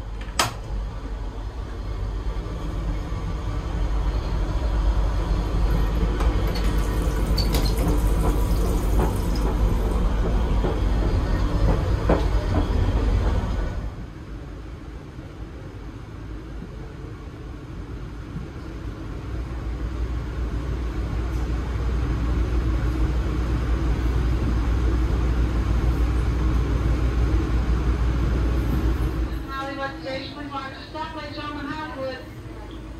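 Running noise of a moving commuter train heard from inside a coach: a steady low rumble that drops suddenly about halfway through, then builds back up to the same level.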